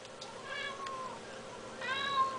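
Ragdoll cat meowing twice, faintly, with drawn-out calls that bend down in pitch: the cat is complaining at a moth on the ceiling that it cannot reach.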